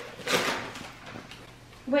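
Wrapping paper being torn off a gift box: a burst of tearing about a third of a second in, then softer crinkling and rustling that fades.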